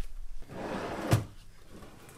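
Wooden drawer pulled open on metal drawer slides: a short sliding rush of about half a second, ending in a sharp knock as it reaches the end of its travel.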